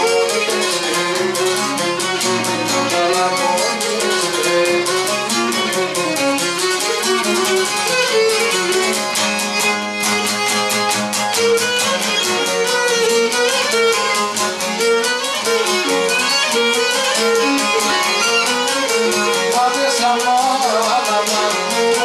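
Cretan lyra and laouto playing a syrtos dance tune. The bowed lyra carries the melody over the laouto's steady plucked rhythm.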